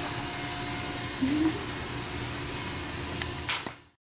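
A steady mechanical hum, like a running electric appliance, with a short rising vocal sound about a second in and a sharp click near the end before the sound fades out.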